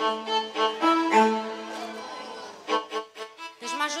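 Stage keyboard playing a short melody of held, slightly wavering notes in a violin-like string voice, through the PA. About two and a half seconds in, the held notes give way to shorter, choppier notes.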